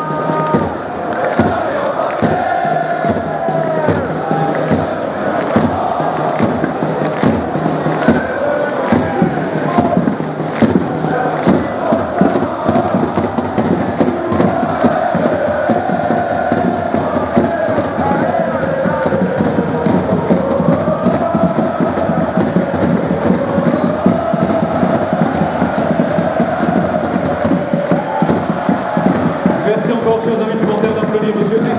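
Large stadium crowd of football supporters singing a chant together, the tune rising and falling, over frequent sharp percussive beats.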